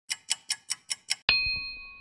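Clock-ticking sound effect: six quick, sharp ticks, about five a second, then a single bell ding a little over a second in that rings on and slowly fades.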